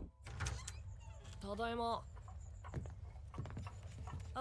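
A short spoken line about halfway through, over a steady low rumble with a few faint clicks.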